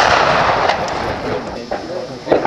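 The report of a Werder M/69 rifle firing its 11.5 mm black-powder cartridge. The shot's boom rolls on and dies away over about a second.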